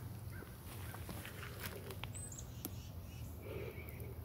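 Faint outdoor garden ambience: a low steady rumble with a few soft clicks and one brief high chirp a little past two seconds in.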